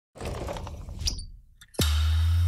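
Sound effects of an animated logo intro: a crackling, clinking burst for about a second and a half, then near the end a sudden deep bass hit that drops sharply in pitch and holds as a steady low hum.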